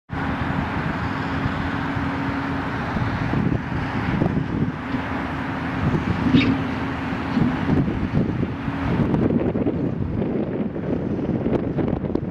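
Steady outdoor noise of wind on the microphone mixed with a low, continuous hum of distant road traffic, with a brief high chirp about halfway through.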